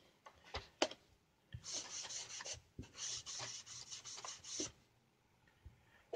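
Foam sponge wiping wood stain along a bare softwood stick, first with a couple of light clicks, then a run of short, soft scrubbing strokes for about three seconds.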